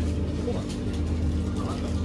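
Shop ambience: a steady low hum with indistinct voices in the background.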